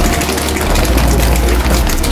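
Loud, steady low rumble of aircraft engines running on an airport apron, with faint chatter of passengers walking to the plane.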